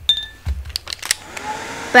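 A hand-held electric dryer switching on about a second in, its motor spinning up and rising in pitch to a steady hum, used to dry a wet watercolour swatch. Before it comes a few light knocks of things being handled.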